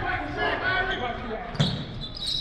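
A basketball bouncing on a hardwood gym floor, twice: once at the start and more loudly near the end, with voices in the gym around it.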